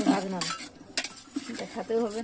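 Metal ladle clinking and scraping against an aluminium pot while stirring chunky vegetable khichuri, with a few sharp clinks.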